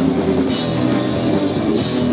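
Live rock band playing loud and steady: electric guitars, bass guitar and drum kit together.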